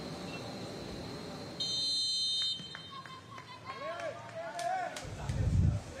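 A referee's whistle blown once, a steady high blast about a second long, followed by players' voices shouting across the pitch and a low thump near the end.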